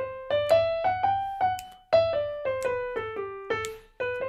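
Piano playing a major scale in single notes with a swing feel. The notes step up to a longer held note about one and a half seconds in, then step back down and turn upward again near the end.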